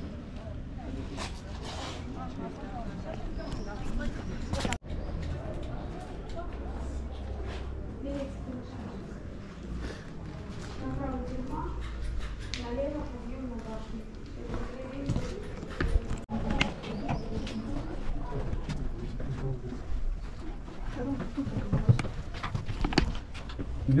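Indistinct chatter of people close by, with footsteps on stone paving and stone steps; the steps come as sharper, more frequent clicks in the last third.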